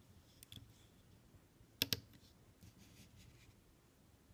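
Faint clicks of rubber loom bands being stretched onto the plastic pegs of a Rainbow Loom, with a sharper double click just under two seconds in.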